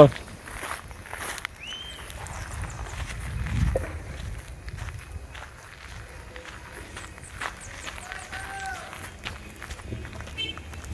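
Footsteps of people walking over gravel and grass, irregular and fairly faint, with a low rumble swelling about three to four seconds in.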